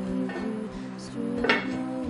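Background acoustic guitar music playing held, picked notes. About one and a half seconds in, a single clink as the lid is set onto an enamelled cast-iron pot.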